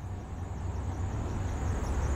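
City street traffic: a steady low rumble of passing vehicles with a faint hiss above, building slightly.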